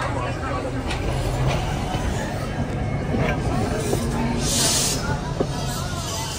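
Background voices chatting over a steady low rumble, with a short burst of hiss about four and a half seconds in.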